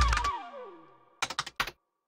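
Background music ends with a tone sliding down in pitch, then a quick run of about five keyboard-typing clicks from a sound effect, followed by silence.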